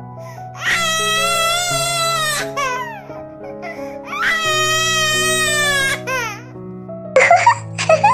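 A baby crying in two long wavering wails over background music with steady held notes; short baby giggles start near the end.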